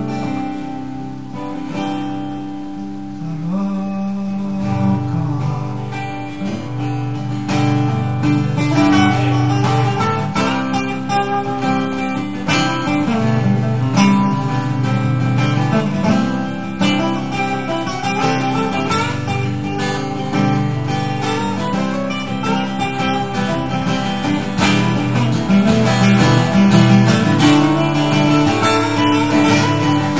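Two acoustic guitars playing together live, picked and strummed chords. Softer for the first few seconds, then fuller.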